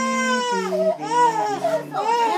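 An adult woman's voice drawing out long vowels with no clear words, the pitch stepping down in stages across the two seconds, in a wavering, crying-like way.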